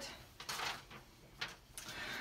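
Faint handling noise of a sheet of paper being moved on a desktop: a soft rustle and a couple of light taps.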